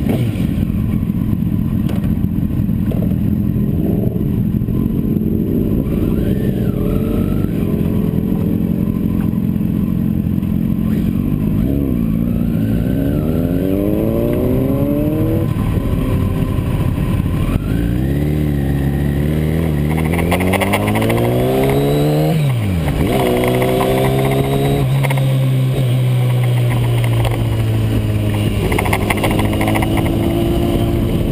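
2008 Kawasaki Ninja ZX-10R's inline-four engine idling steadily, then pulling away: the revs climb and drop back twice as it shifts up, then hold fairly steady as the bike gets under way.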